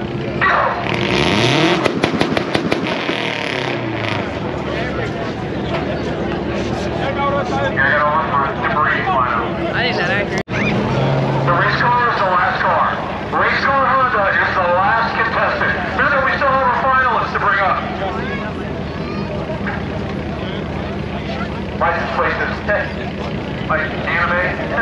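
Race car engines at the starting line revving hard with crackle about a second in, the revs falling away, then idling steadily under loud crowd chatter.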